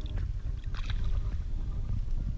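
Shallow water sloshing as a hand releases a European sea bass, with a short splash just under a second in as the fish kicks away. A steady low rumble runs underneath.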